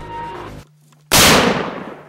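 Background music cuts off about half a second in, and after a brief pause a single loud muzzleloader rifle shot goes off, its report fading over most of a second.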